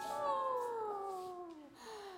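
Elderly soprano's voice sliding slowly down in pitch over about two seconds, fading as it falls.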